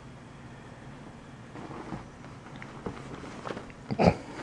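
Faint rustling of cotton bed sheets and light scratchy ticks as a kitten pounces on and claws at them, ending in a louder thump right at the end.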